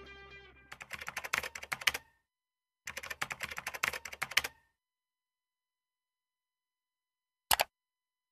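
Music fading out, then two bursts of rapid clicking, each about a second and a half long, and one short click near the end.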